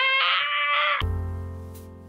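A woman's voice holding a high, drawn-out playful note for about a second, then outro keyboard music cuts in: a sustained chord that slowly fades.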